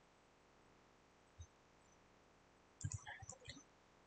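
Near silence, with a single faint click about a second and a half in and a short cluster of faint computer mouse clicks near the end.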